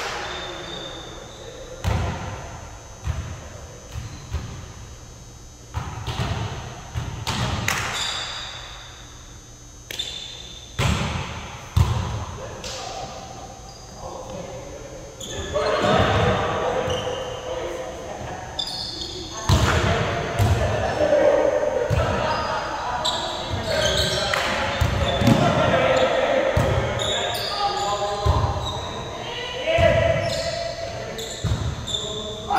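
Volleyball being played in a gymnasium: repeated sharp slaps of the ball off players' hands and forearms, and thuds of it on the wooden floor, echoing in the hall. Players shout to each other, more often in the second half.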